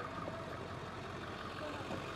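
Steady outdoor background noise: a low engine-like hum, as of a vehicle idling, with faint distant voices.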